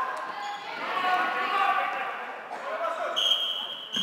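Voices of players and spectators in a sports hall, then, about three seconds in, a floorball referee's whistle blown in one long steady high blast that carries on past the end.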